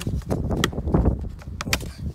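Plastic interior door trim of a Lada Priora being pried off by hand: several sharp clicks and snaps as the clips let go, over low handling noise.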